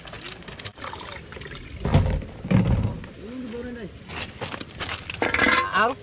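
Rocks and coral rubble knocking and clinking as they are handled and set down, with two loud knocks about two seconds in. A person's voice is heard in between.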